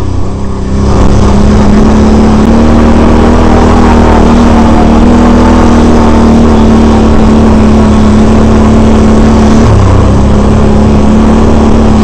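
Can-Am Renegade 800R ATV's V-twin engine running hard and steady under throttle on the trail. It gets louder about a second in as the rider opens it up, and eases off briefly near the end before picking up again.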